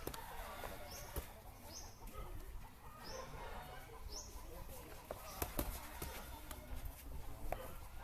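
Gloved punches landing during a boxing spar: irregular sharp slaps and thuds, several in quick succession around the middle and later part.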